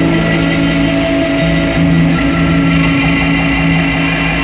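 Live indie rock band's electric guitars and bass guitar holding long, ringing notes over a steady low bass note in an instrumental passage, with no singing.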